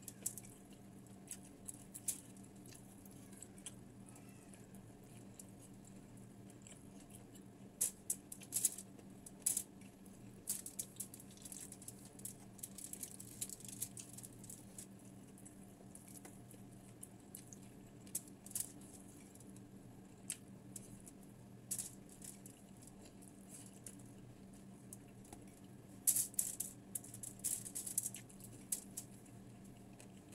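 Close eating sounds of fried tilapia and rice eaten by hand: scattered small clicks and crunches of chewing and fingers on aluminium foil, over a steady low hum. The clicks come in busier clusters a few times, the busiest about four seconds before the end.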